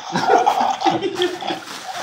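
A person's voice, laughing and talking indistinctly.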